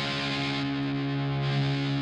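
Electric guitar through a Marshmello Jose 3Way 50-watt tube amp head, heard through a Greenback speaker emulation: a distorted chord held and ringing steadily, with no new picking. The volume of the jumped second channel is being turned up, blending the bassier normal channel in parallel with the lead channel.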